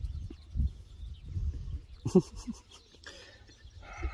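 A horse breathing close to the microphone, with low, uneven rumbles, and a short pitched vocal sound about two seconds in.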